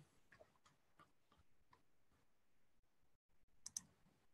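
Near silence: faint room tone, broken near the end by two quick, faint clicks, typical of a computer mouse or keyboard being used.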